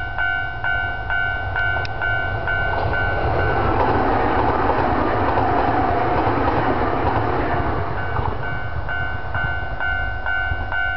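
Level crossing warning bell ringing, a rapid repeated two-tone ding. A few seconds in, an electric limited express train passes, its rolling noise rising to cover the bell, then fading as the bell is heard again near the end.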